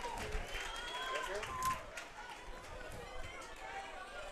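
Faint stadium ambience with distant voices talking in the stands, heard under the broadcast microphones.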